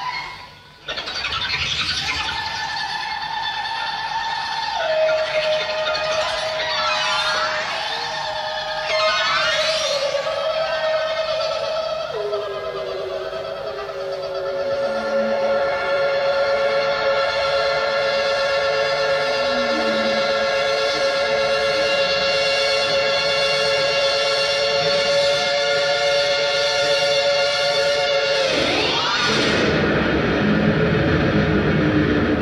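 Live electric guitar playing long, sustained notes that step down in pitch, with a few swooping slides, layering through delay echoes into a held chord. Heard on an audience cassette recording made in a concert hall.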